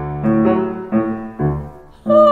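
Grand piano playing a solo accompaniment passage: a run of chords struck about twice a second, each dying away, the playing growing softer near the end.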